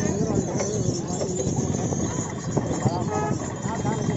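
A bullock cart moving along a dirt track, with the bullocks' hooves and the cart rattling unevenly, and people's voices calling over it.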